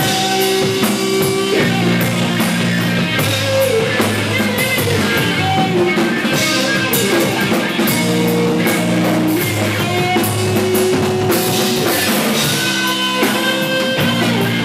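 Live rock trio playing: electric guitar, electric bass and a Pearl drum kit with frequent cymbal hits, the guitar holding sustained notes over a steady bass line.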